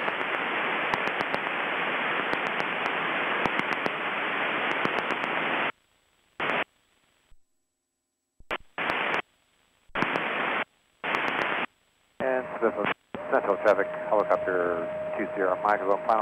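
Cessna 172 engine and propeller noise heard through the headset intercom as a steady hiss. About six seconds in it cuts out and then returns in short on-off bursts, as the intercom squelch opens and closes. Near the end, radio-like voices come in over a steady tone.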